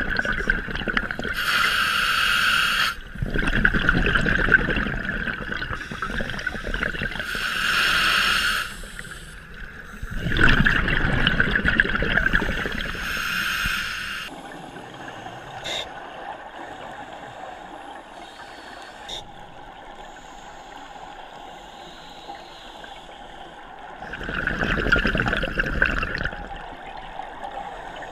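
Scuba breathing heard underwater: regulator inhalations and gurgling bursts of exhaled bubbles, repeating every couple of seconds. About halfway through it drops to a quieter steady hum, with one more breath near the end.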